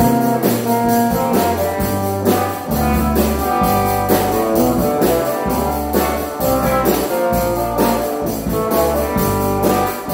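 A live band playing an instrumental: electric guitar lines over a low bass line and a steady drum beat with cymbals.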